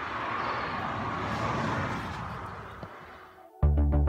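Steady outdoor background noise that fades away over about three seconds, then synthesizer background music with a steady beat cuts in sharply near the end.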